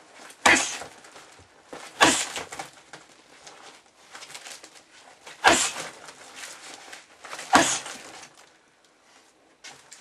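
Four short hooks driven into a heavy bag fitted with a grappling dummy, each landing as a sharp slap-thud with a little ring after it, spaced unevenly from about one and a half to three and a half seconds apart. Faint rustling fills the gaps between strikes.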